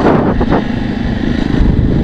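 A Jawa Perak motorcycle's 334 cc single-cylinder engine running steadily on the move, heard from the rider's seat, with a heavy low rumble of wind and road noise.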